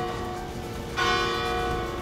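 A large hanging metal bell ringing. The ring of an earlier stroke carries on, and a fresh stroke sounds about a second in.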